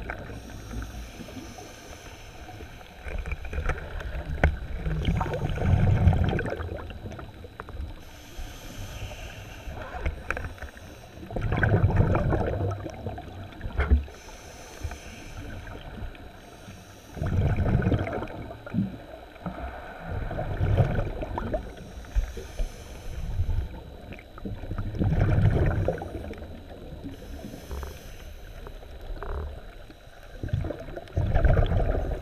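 Underwater recording of a diver breathing through a scuba regulator: a hissing inhale, then a burst of bubbling exhale, repeating about every six seconds over a steady underwater rush.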